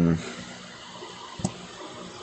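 The end of a drawn-out, falling spoken "in…" in a man's voice, then steady faint background hiss with a single short click about one and a half seconds in.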